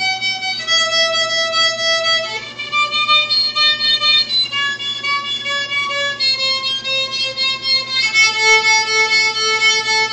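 A child playing a small violin, bowing each note in a quick run of short repeated strokes. The melody steps down note by note, each pitch held for a second or two.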